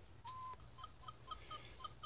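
Faint bird calling: one brief steady note, then a string of about seven short chirps.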